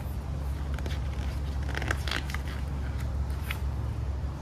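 Pages of a picture book being turned, with a few short paper rustles and crackles, the busiest about halfway through, over a steady low background rumble.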